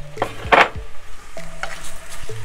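Metal spoon stirring penne pasta and sauce in a hot pot, with one loud scrape against the pot about half a second in.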